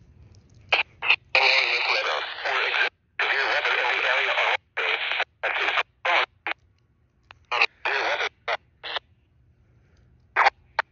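Baofeng handheld two-way radio receiving a VHF channel: bursts of garbled, unintelligible speech and static that switch on and off abruptly as the squelch opens and closes. The two longest bursts come in the first half, followed by a string of short clipped blips.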